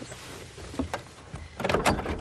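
An old car's door latch and handle being worked open, with a few light clicks and then a louder cluster of clicks and rattles near the end.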